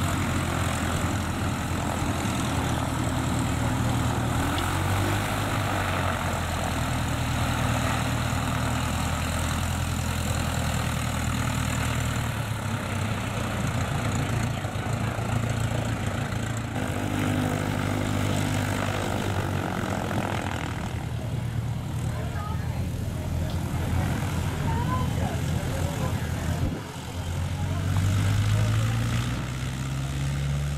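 Piper J-3 Cub's engine and propeller running at low power as it taxis past. Near the end the engine note rises as the throttle opens.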